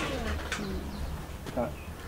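A dove cooing in short calls, over a steady low hum.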